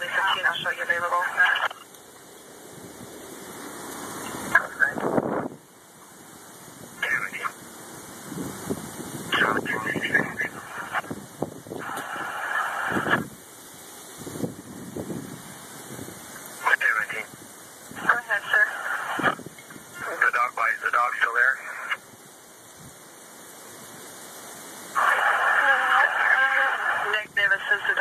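Police and fire dispatch radio traffic from a scanner: short bursts of thin, narrow-sounding voices come and go every few seconds. Between transmissions there is a rushing noise that slowly swells and then cuts off abruptly.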